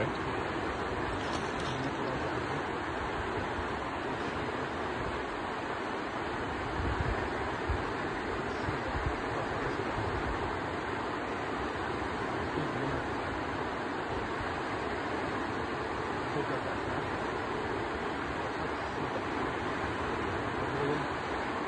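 A fast mountain river rushing steadily, a continuous even roar of turbulent water.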